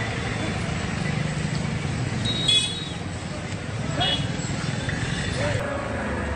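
Street noise of people's voices and road traffic, with a short, loud horn toot about two and a half seconds in.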